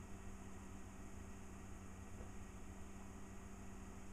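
Faint steady hum of an eMachines T1090 desktop PC running while it boots Windows XP.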